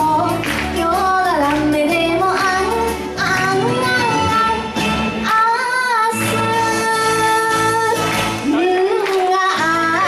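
A girl singing a Japanese song into a microphone over a karaoke backing track. About halfway through she sings a note with strong vibrato, then holds a long steady note.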